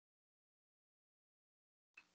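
Near silence: dead, muted call audio, broken only by a faint click and short hiss right at the end as a microphone opens.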